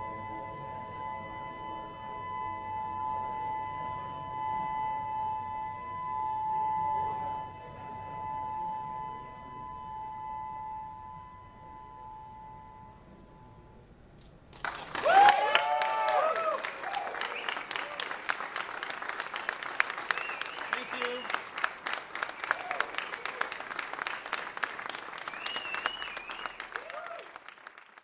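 A sustained, layered cello drone of steady held tones slowly fades away. About halfway through, the audience suddenly breaks into applause with cheers and whoops.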